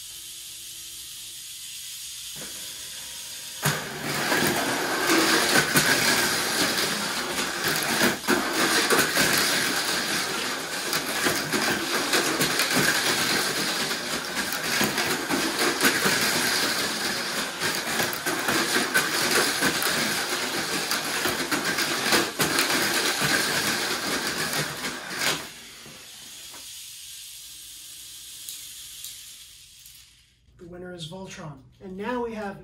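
Two Tamiya Mini 4WD Mach Frame cars racing on a plastic multi-lane track: the high whir of their small electric motors and a constant rattle and clatter of the cars against the track walls. It starts a few seconds in and cuts off about 25 seconds in, when the race ends.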